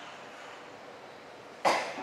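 A person coughs once, sharply and loudly, near the end, after a stretch of quiet room tone.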